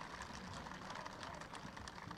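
Faint crowd noise from a large outdoor rally audience, with a light scatter of clapping.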